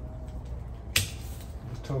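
A single sharp snip of pruning secateurs cutting a cedar of Lebanon branch, about a second in.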